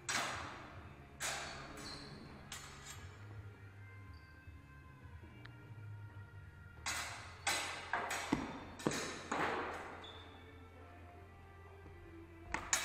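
Steel fencing swords clashing blade on blade: three separate strikes in the first three seconds, then a quick flurry of clashes from about seven to ten seconds in, each with a short metallic ring. A steady low hum runs underneath.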